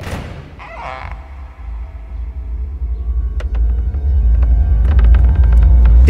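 Horror-trailer score: a deep rumble swelling steadily louder for several seconds, with scattered sharp ticks near the end, then cutting off suddenly.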